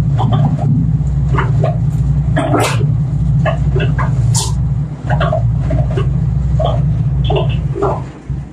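A machine running with a loud, steady low drone that cuts off at the very end, with short, sharp higher sounds scattered over it.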